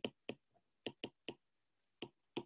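Stylus tip tapping on a tablet's glass screen while handwriting: a few faint, sharp clicks in two small clusters.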